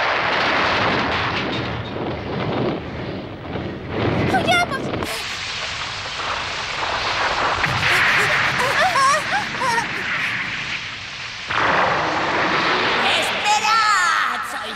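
Cartoon sound effect of a large fire burning, a thick rushing noise with explosive rumbles through it. Over it a high, wavering voice cries out twice, a little after the start and again past the middle.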